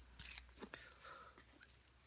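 A few faint ticks from mail envelopes being handled on a table in the first half-second or so, then near silence.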